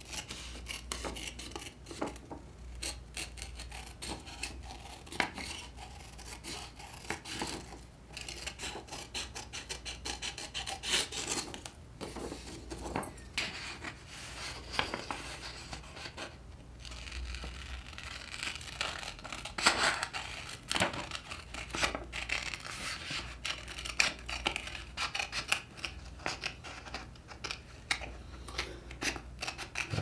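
Scissors snipping through glossy magazine paper in many short, irregular cuts, with the page rustling as it is turned.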